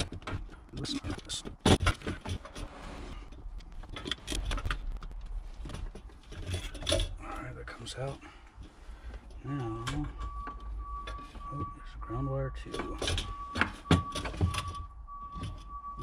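Plastic electrical connectors being pried and unclipped from the top hat of a BMW fuel pump with hands and a small pick tool: scattered clicks, taps and rattles. A faint steady high tone comes in a bit past halfway and holds to the end.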